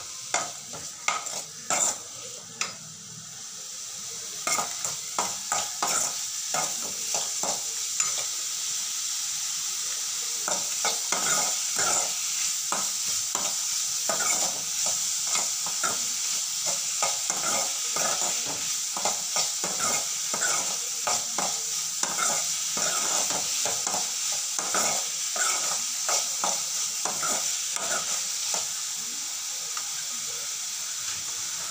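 Pumpkin pieces sizzling as they fry in oil in an aluminium kadai, with a steel ladle stirring and scraping against the pan. The scrapes are sparse at first and become quick and steady, several a second, from about four seconds in.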